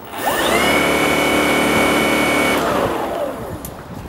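Battery-electric snow thrower's motor and auger switched on with the bail bar. It spins up with a quick rising whine, runs steadily for about two seconds, then winds down with a falling pitch once the bar is released.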